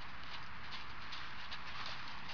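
Muffled hoofbeats of a horse walking loose on arena sand, over a steady background hiss.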